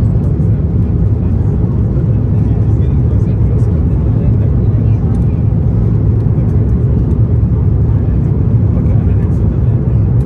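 Steady low roar inside the cabin of an Airbus A330-900neo on final approach with its flaps extended: the noise of the engines and rushing air heard through the fuselage.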